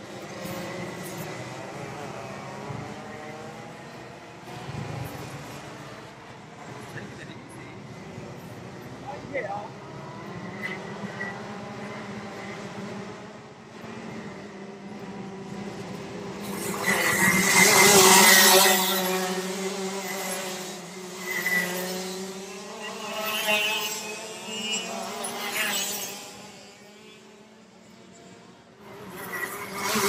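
Two-stroke racing kart engines revving up and down as they run, their pitch rising and falling again and again. The loudest moment comes a little past halfway, with several shorter rises after it, and the sound drops away near the end.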